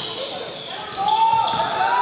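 A basketball being dribbled on a hardwood gym floor, with sneakers squeaking as players cut and defend. Voices of players and spectators are mixed in.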